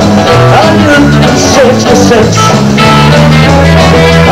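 Live rock-and-roll band playing loud, with a male singer at the microphone over electric guitar, bass guitar and drums.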